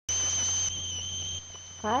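Electronic ringing in the recording: a steady high-pitched tone with a second, higher tone above it, over hiss and a low hum, cutting in suddenly as the recording starts. A woman says "Hi" near the end.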